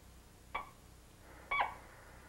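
Short electronic beeps about a second apart, the pulse beat of an operating-room patient monitor, over a faint low hum.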